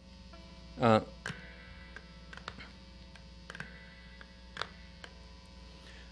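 Steady electrical hum from a Mexican Fender Stratocaster through a guitar amplifier, a terrible hum that the player blames on the guitar's different pickups and cannot turn off. A few faint clicks sound over it.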